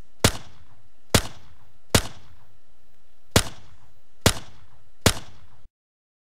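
Six pistol-shot sound effects, H&K USP samples from a video-game sound pack, fired at irregular intervals of about a second, each followed by a short, fainter tick. The sound cuts off suddenly near the end.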